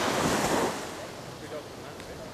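Surf washing onto a sandy beach, with wind on the microphone: a rushing noise, loudest in the first half second, that eases by about a second into a steady, quieter wash.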